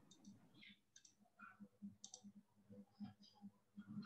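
Near silence on an online call: a few faint, scattered clicks over a faint low hum.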